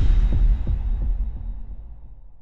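Logo-sting sound effect: a deep bass boom with a few quick low pulses in its first second, then a low rumble that fades away.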